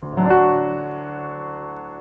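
A piano chord struck at the start and held, ringing out and slowly fading.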